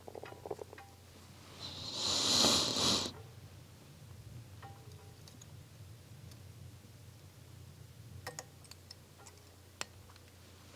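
Quiet fly-tying handling: a few faint clicks and taps as a plastic material clip and CDC feathers are worked into a dubbing loop, and a brief hiss about two seconds in, over a low steady hum.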